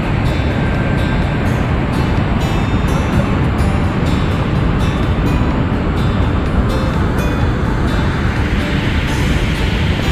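Loud, steady roar of the Yellowstone River plunging over a waterfall into its canyon, with background music faintly underneath.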